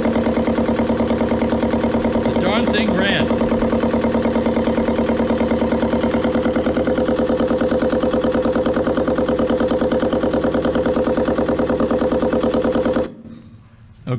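Small inboard marine diesel engine, freshly reassembled and on its first try, running at a steady idle with an even, rapid firing beat. It cuts off suddenly about a second before the end.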